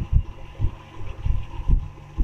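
Marker writing on a whiteboard: a series of dull, low knocks at irregular intervals as the strokes press on the board, over a faint steady hum.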